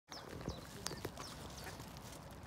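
Faint bird calls on a pond, soft mallard duck calls with a few short, high, falling chirps, over a steady outdoor background; a couple of sharp clicks come about half a second and a second in.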